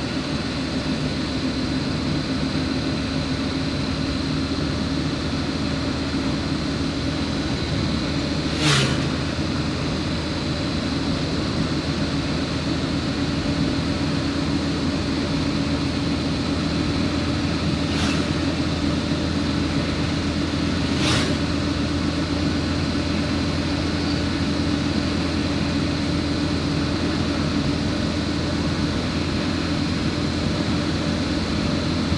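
Steady engine hum and tyre noise from inside a vehicle driving along a smooth, freshly asphalted road, with three sharp knocks spread through it.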